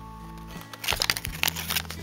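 Thin paper leaflet rustling and crinkling as it is unfolded and handled, in a quick run of crackles through the second half. Background music with steady low notes plays underneath.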